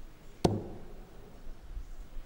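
A steel-tip dart hitting a bristle dartboard once, a single sharp knock about half a second in.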